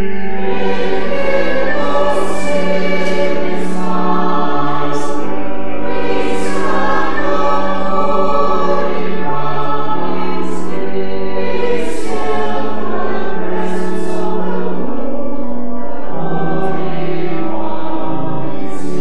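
Church choir and congregation singing together, sustained sung notes over steady low held notes.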